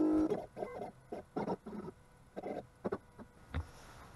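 Stepper motors of an OpenBuilds LEAD 1010 CNC gantry jogging toward its home position. A steady whine cuts off just after the start, then come a series of short chirping moves and clicks, and a dull thump near the end.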